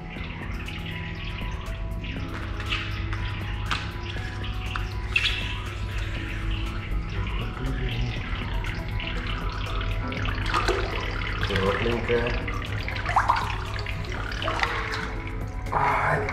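Water running and splashing in a spa's foot-bath basins, over background music and a steady low hum.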